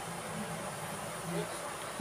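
Room tone: a steady low hum with a faint hiss under it, and a brief soft swell about a second and a half in.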